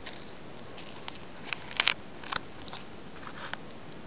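Footsteps crunching on a stony gravel dirt track, an irregular series of crisp steps, the loudest a little under two seconds in.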